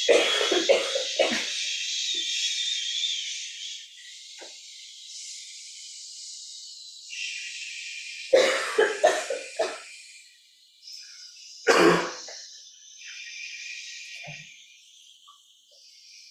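People breathing out on a long, steady hissed 'sss' as a breath-control exercise, pushing the air from the diaphragm. It is loud for the first few seconds, then carries on more faintly as the breaths run out at different times. Short coughs break in at the start, around eight to ten seconds in and once near twelve seconds.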